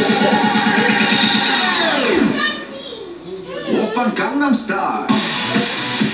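Dance music with a steady beat; about two seconds in, the whole track slides down in pitch and drops away. Wavering, swooping sounds follow, and a full beat comes back in about five seconds in.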